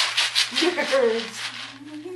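A small cardboard box of Nerds candy rattling in quick shakes for about the first half second, followed by a child's voice.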